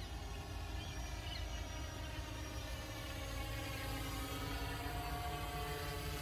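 Quadcopter drone flying overhead: its propellers and motors give a steady multi-tone hum and buzz that shifts slowly in pitch and grows a little louder as it comes nearer.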